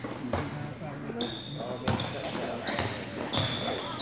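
A basketball bouncing on a gym court, a few sharp thuds, with two brief high-pitched sneaker squeaks and voices chattering in the background of a large echoing gym.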